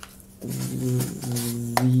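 A man's voice holding a long, steady hummed note while he counts, with sharp clicks of cardboard toilet-paper tubes being handled and pressed into one another, the loudest about 1.8 s in.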